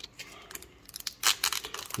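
Foil wrapper of a basketball trading-card pack crinkling and tearing as it is opened by hand, in sharp crackles that come thicker from about a second in.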